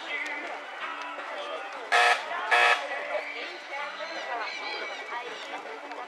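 Two short, loud buzzer blasts about half a second apart, over steady chatter from people close by.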